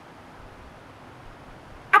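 Faint steady hiss of room tone in a pause between spoken sentences, with a man's voice starting again near the end.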